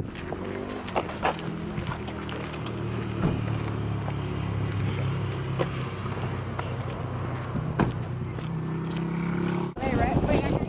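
A vehicle engine running with a steady low hum, a few light clicks over it. The hum cuts off suddenly just before the end.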